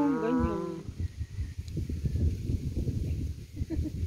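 A loud, drawn-out call with a wavering pitch lasts about the first second. After it, a low irregular rumble of wind buffets the microphone.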